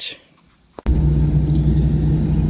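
Car interior noise while driving: a steady low engine and road rumble with a constant hum, cutting in abruptly just under a second in after a near-quiet start.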